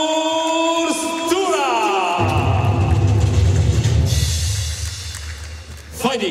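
Ring announcer's long, drawn-out call of a fighter's name, the held note sliding down and ending about a second and a half in. Music with a heavy bass beat starts about two seconds in and fades near the end.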